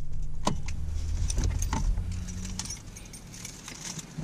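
Car keys on a lanyard jingling at a Jeep's ignition: a few light jingles and clicks. A low steady hum fades out about two and a half seconds in.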